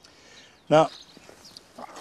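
A man says a single word, "Now," about two-thirds of a second in; around it there is only faint, quiet outdoor background with no distinct sound.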